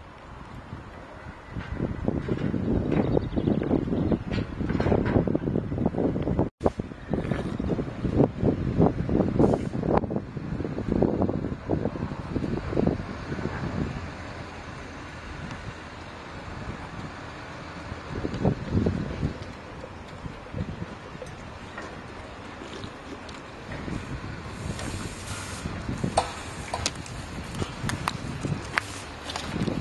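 Wind buffeting the microphone in irregular gusts, heaviest in the first half and again near the end.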